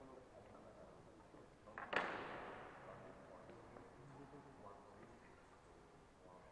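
A single sharp bang about two seconds in, with a long echo that dies away over about a second in a large hall, over faint background voices.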